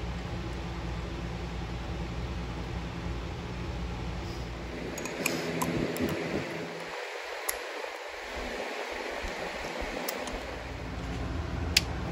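A steady low hum, then from about five seconds in a few sharp metallic clicks of a socket and extension being snapped together and fitted into a cordless impact driver's chuck, with one more click near the end.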